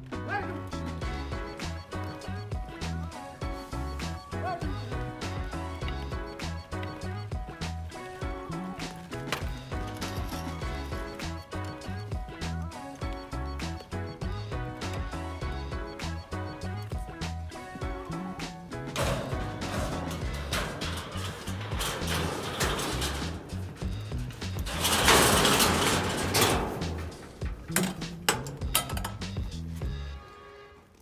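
Background music with a steady beat throughout. From about two-thirds of the way in, a wooden-and-metal scraping noise of a straight ladder being slid into a fire engine's ladder compartment rises over the music, loudest a few seconds before the end.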